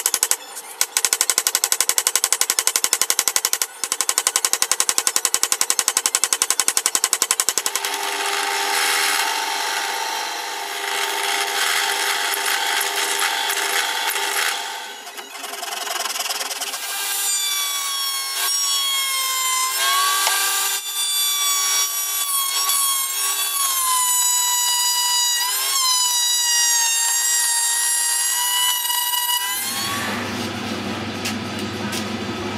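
Woodworking tool noise in stages. For about the first eight seconds there is a fast, even chatter while dowels are forced through a steel dowel plate. Then comes a steadier rubbing, and from about halfway a high whine with overtones that dips and recovers in pitch.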